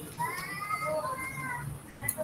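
A high-pitched call that rises and falls, heard twice in quick succession.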